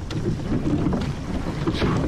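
Wind buffeting the microphone over water rushing past the hull of a rowed surf boat, with a brief splash of the oars near the end.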